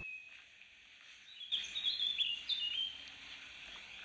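A songbird singing a quick phrase of short, high notes about a second and a half in, lasting about a second and a half, over faint outdoor background noise.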